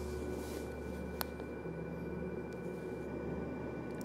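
Low steady hum with faint steady high tones, and one sharp tick about a second in.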